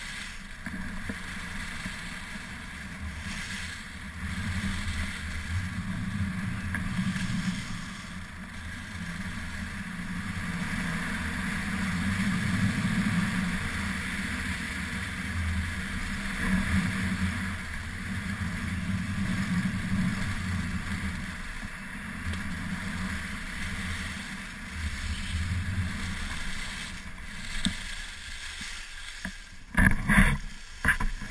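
Wind rushing over an action camera's microphone together with the hiss of skis sliding and carving on groomed snow during a downhill run, swelling and easing in waves. A sharp knock right at the end.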